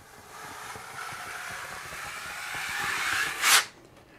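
A wide metal drywall skimming blade drawn down a wall under firm pressure through wet joint compound, held at about 45 degrees: a steady scraping swish that grows slightly louder, ending in a short, louder scrape near the end.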